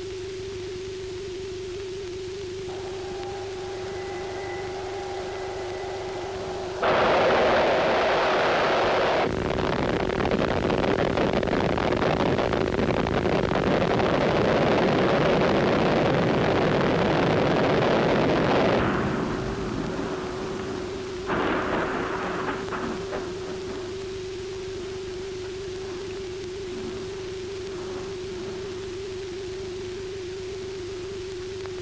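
Rocket engine firing: a loud rushing roar that starts suddenly about seven seconds in, runs about twelve seconds and dies away, with a shorter burst a couple of seconds later. A steady electronic drone tone sounds underneath.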